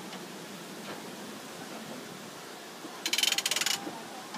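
Ride train rolling slowly on its track with a steady low rumble. About three seconds in, a loud, rapid rattling clatter lasts just under a second.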